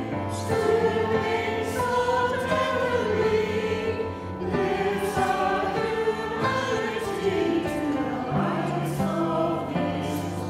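A church choir of men and women singing a sacred choral piece in harmony, with held notes over a steady low bass line.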